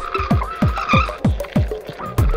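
Live electronic music: a fast beat of deep kick drums that drop in pitch, about three a second, under squealing, gliding high tones.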